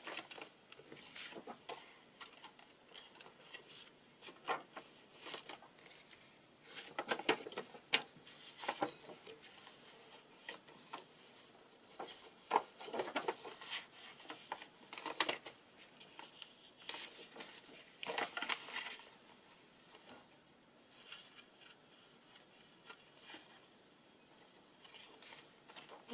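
Sheets of paper rustling and sliding against each other as a stack of tea-dyed papers and book pages is handled, flipped through and rearranged by hand. The rustles come irregularly, with a quieter spell of a few seconds near the end.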